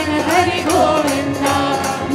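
Group devotional singing with musical accompaniment and a steady beat of percussion.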